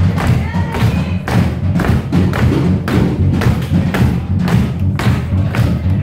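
Rock trio playing live, loud and bass-heavy, with drum hits about three times a second; an instrumental stretch with no singing.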